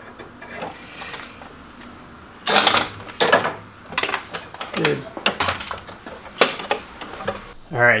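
Galvanized perforated metal strapping and hinges clinking and clattering as they are handled against a plywood board, with several sharp knocks from about two and a half seconds in.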